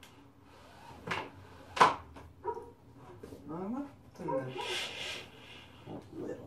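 A pet dog barks twice about a second in, the second bark the louder. Later, sheets of paper rustle as they are handled.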